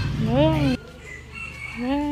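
Rooster crowing: a short call that rises and falls in pitch and cuts off abruptly a little before a second in, then another crow near the end.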